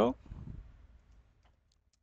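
Computer keyboard being typed on: a short run of faint key clicks that dies away a little past the middle.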